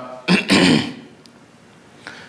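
A man clearing his throat: a short burst and then a longer one within the first second.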